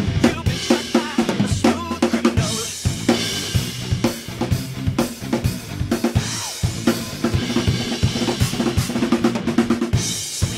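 Acoustic drum kit played in a fast, driving groove: bass drum and snare strikes with rimshots and cymbal crashes. It is played along to a recorded pop backing track with a bass line.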